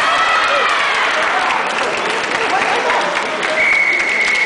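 Spectators clapping in a large hall during a kendo bout, with a drawn-out shout at the start, likely a fencer's kiai. A steady high tone begins near the end.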